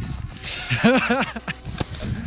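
A man laughing in a few short bursts about a second in, over hissing wind noise on the microphone.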